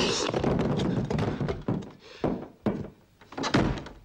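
Dull thunks and knocks from the animated clay hands moving, a foley soundtrack effect: a dense rush of noise in the first second, then four separate thunks about half a second apart, the last one loudest.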